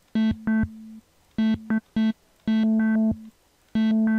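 A single sustained note from the Native Instruments Massive software synthesizer, chopped into a rhythmic pattern of short blips and longer held pulses by step-sequenced (Performer/Stepper) modulation. Its brightness changes from one pulse to the next.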